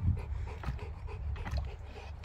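A young Dogue de Bordeaux panting and snuffling with its muzzle at the water of a plastic paddling pool, over a steady low rumble.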